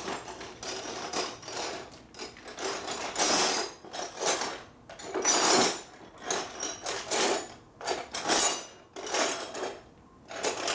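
Metal hand tools and parts clinking and clattering in short, irregular spells as work goes on at the motorcycle's handlebar and clutch lever.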